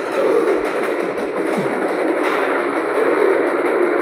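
Action-film trailer soundtrack playing back: a loud, steady, dense wash of sound with music under it.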